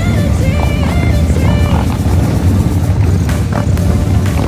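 Background music with a stepped melody over the steady low rumble of Harley-Davidson V-twin motorcycles riding past. The melody fades out after about a second and a half.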